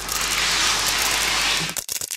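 Superhero-landing sound effect of ground cracking and debris scattering: a steady hiss of crumbling rubble lasting nearly two seconds, breaking into a few crackles as it fades near the end.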